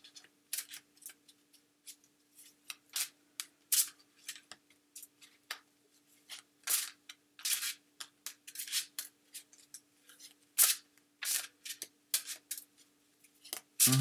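A deck of oracle cards being shuffled by hand: a run of quick, irregular sliding strokes of card against card, a few a second, with short gaps between them.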